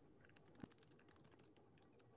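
Faint typing on a computer keyboard: a quick run of light key clicks, with one sharper click just over half a second in.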